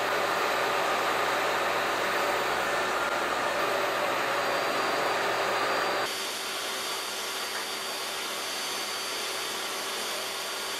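DeWalt jobsite table saw running steadily as a board is fed through the blade, a continuous rushing motor noise with a faint high whine. It becomes slightly quieter about six seconds in.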